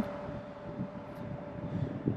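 Faint, steady mechanical hum with one thin constant tone and a low rumble underneath.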